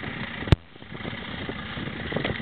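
A single sharp knock about half a second in, over a steady low engine-like rumble.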